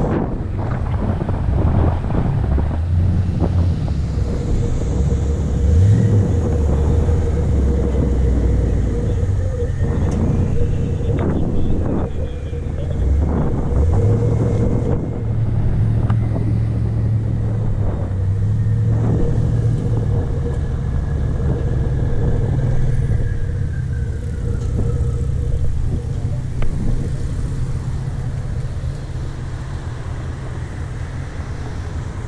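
Motorcycle engine running while riding, its low note stepping up and down as the rider works the throttle and gears, over steady wind and road rush.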